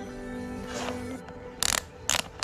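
Background music, and near the end a short burst of ratcheting clicks from a cycling shoe's rotary lace dial being turned to tighten the lace wire.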